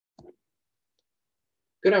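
A single short, faint click just after the start, then dead silence until a man's voice begins near the end.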